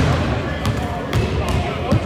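Basketball bouncing on a hardwood gym floor, about five bounces spread over two seconds, in a reverberant gym with voices in the background.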